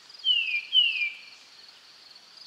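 Two short falling whistled bird calls, about half a second apart, over a steady high pulsing trill of crickets or other insects.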